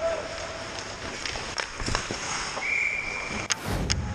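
Ice hockey game sound at the rink: scattered sharp clicks of sticks and puck and skates on the ice. About two-thirds in comes a short, steady referee's whistle. Just before the end there is a loud whoosh, a transition sound effect.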